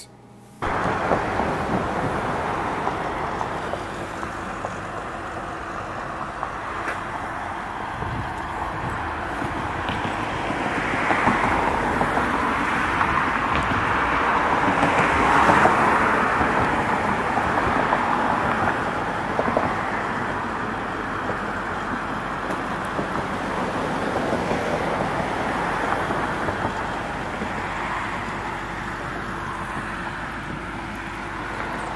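Road traffic noise outdoors: a steady rush of passing vehicles that starts suddenly about half a second in and swells to its loudest about halfway through as a car goes by, then eases off.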